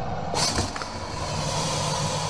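A low, steady rumble with a short hiss about half a second in.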